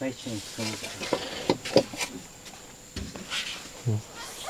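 An elderly man's voice speaking quietly in short phrases, with a few faint clicks and knocks in the pauses.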